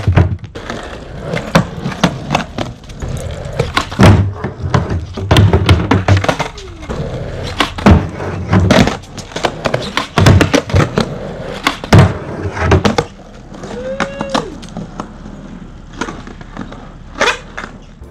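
Skateboard rolling on concrete, with a string of sharp clacks and slaps as the deck and wheels come down on the ground and a wooden ledge during ollies. The hardest hits come every second or two for the first thirteen seconds, then the rolling is quieter.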